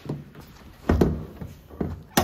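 A car hood being unlatched and lifted by hand on a Kia K5. There are two dull clunks, the louder one about a second in and a smaller one near the end.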